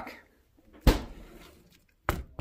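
A single sharp knock on a solid block of ice frozen in a plastic food container, about a second in, with a short ring-off.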